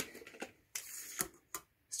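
A few light, irregularly spaced clicks and a short rustle: hands picking up and handling a metal-rimmed wall clock.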